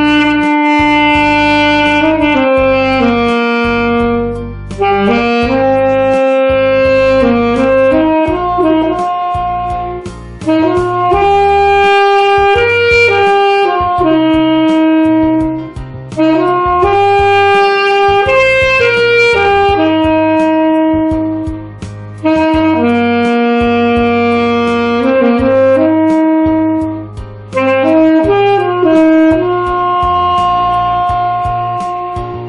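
Saxophone playing a slow, lyrical melody in phrases of long held notes, over a soft low accompaniment.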